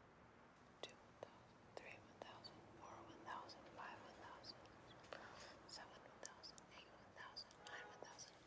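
Near silence: room tone with faint whispering and a few small clicks.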